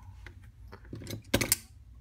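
Light clicks and knocks of metal hand tools being handled and set down on a cutting mat, with two sharper metallic clicks close together about one and a half seconds in.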